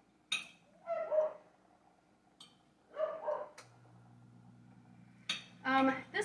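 A dog barking a few short times in the house, around a second in and again about three seconds in. A low steady hum starts about halfway through and runs on.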